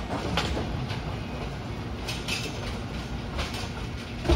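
Bowling alley machinery: a steady low rumble with scattered sharp clacks and knocks. The sound comes from a Brunswick A-2 pinsetter cycling behind the pins, along with balls and pins on neighbouring lanes.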